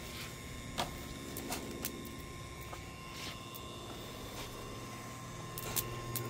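Electric rotisserie motor turning the spit with a low steady hum, with a few light clicks and plastic crinkles from a zip-top marinade bag and basting brush being handled.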